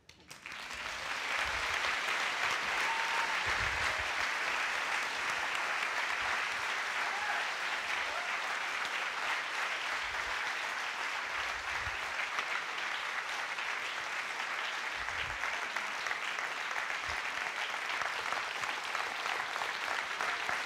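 A large audience applauding, the clapping building up within the first second and then holding steady.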